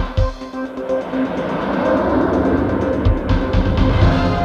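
Amiga tracker module music playing in Protracker on four sample channels. Through most of this stretch a loud hissing noise sample covers the melody, with low drum thumps right at the start and again about three seconds in.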